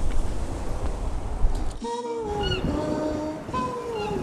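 Wind noise rumbling on the microphone. It cuts off suddenly about two seconds in, and music with a sung melody begins.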